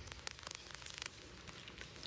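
Faint, irregular crackling clicks, thickest in the first second, over a low hiss.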